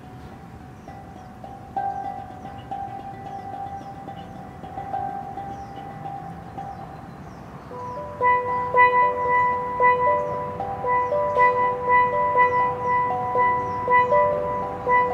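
Steel pan played with sticks: a quiet melody of ringing notes that grows louder about eight seconds in, with repeated strikes in a steady rhythm.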